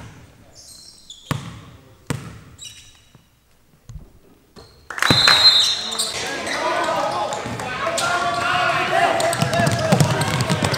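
A basketball bounced on a gym's hardwood floor, a few single sharp bounces spaced under a second apart, as at a free throw. About halfway through a burst of loud shouting and cheering voices fills the hall, opening with a brief whistle.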